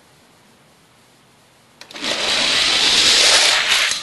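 Five Hot Wheels die-cast cars let go from a six-lane starting gate with a click about two seconds in. They roll down the orange plastic track as a loud rushing rattle for about two seconds, which cuts off suddenly near the end.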